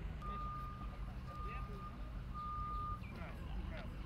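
A vehicle's reversing alarm beeping three times, about a second apart, each beep a steady tone about half a second long, over a low engine hum.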